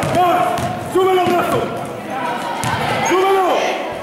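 Basketball game in an echoing sports hall: voices repeatedly shouting short 'ah!' calls over the ball bouncing on the court, with a sharp knock about a second in.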